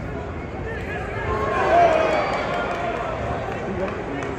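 Boxing crowd noise: a steady haze of indistinct voices, with one voice rising in a loud, drawn-out shout about a second and a half in.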